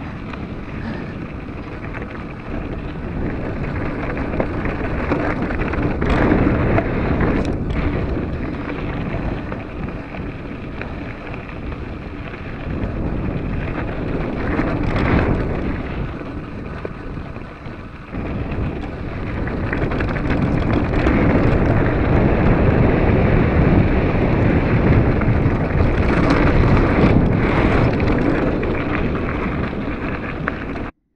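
Wind buffeting the microphone of a handlebar-mounted camera as an Intense Recluse mountain bike rolls over a loose gravel trail. Under it are the rumble of tyres on rock and the rattle of the bike, with a few sharp knocks.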